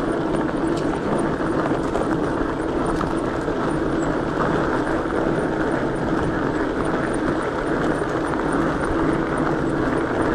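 Fat tires of an electric mountain bike rolling fast over a dirt trail, with wind rushing over the microphone and a low steady hum underneath.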